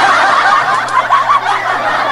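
High-pitched laughter from several voices at once: dense, overlapping titters and giggles that keep going without a break.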